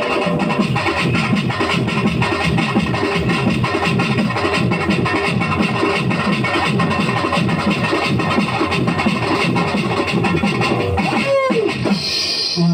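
Loud live folk-dance music: an electronic keyboard with a fast, even drum beat. Near the end a pitch swoops downward.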